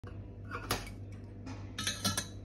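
Kitchenware being handled on a stone countertop: a few short, sharp clinks and knocks of a plate and steel pot or utensils, over a low steady hum.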